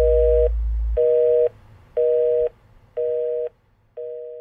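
Telephone busy signal: a two-tone beep repeating about once a second, half a second on and half a second off, four beeps. A low hum underneath stops about a second in.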